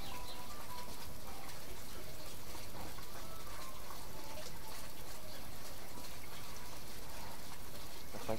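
Steady hiss of outdoor background noise, with faint, brief chirps now and then.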